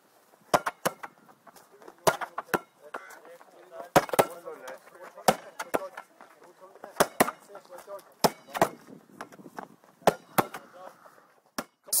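A string of sharp cracks, irregular and about one to two a second: a hurley striking a sliotar and the ball bouncing on tarmac during a hurling drill, with faint voices murmuring underneath.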